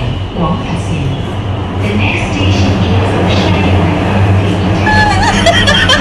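Subway train running, heard from inside the car as a steady low rumble, with some brief pitch-bending sounds near the end.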